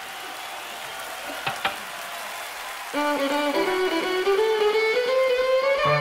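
Low crowd and room noise with two small clicks, then about halfway a violin enters with a held note that slides slowly upward in pitch. This is the opening of the band's next number.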